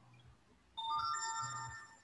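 An electronic notification chime: a short cluster of bell-like tones that comes in about two-thirds of a second in, with a few more notes joining just after, and fades after about a second.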